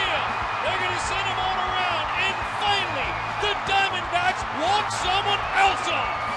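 Baseball stadium crowd cheering loudly and without a break as the winning run scores on a walk-off hit, a dense roar of many voices.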